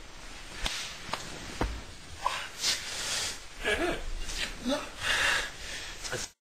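Three sharp knocks in quick succession, about half a second apart, from a wooden spoon striking. They are followed by short breathy bursts and brief voice sounds from the people playing.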